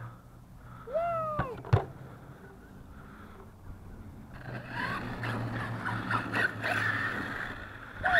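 A 6S electric Arrma Kraton RC monster truck driving across a grass lawn, its motor and tyres running in uneven surges through the last few seconds. Earlier there is a brief falling vocal sound and two sharp clicks.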